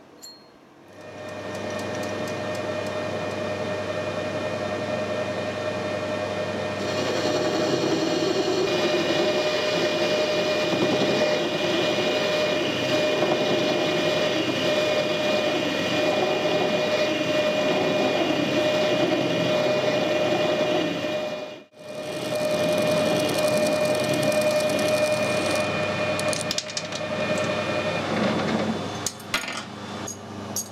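Metal lathe running, turning down the end of a steel shaft: a steady motor tone with the rougher sound of the tool cutting, louder from about seven seconds in. A few light metallic clinks near the end.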